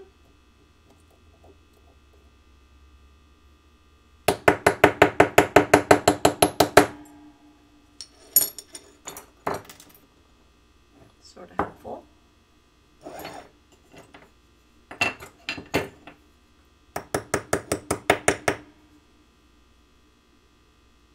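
Light hammer taps on metal with a short ring: a quick run of about a dozen taps a little over four seconds in, a few single taps after it, and a second run of about eight near the end. The taps come from a small metal piece being struck on steel jewelry blocks to shape it.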